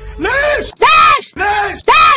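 A woman's voice shouting "leish!" ("why!") in Gulf Arabic, over and over in quick succession, about two shouts a second, each one the same shape, as if the one shout were chopped and looped.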